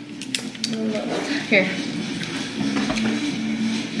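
Over-ear headphones being handled and fitted over a head: a few light clicks and knocks of the plastic headband and ear cups.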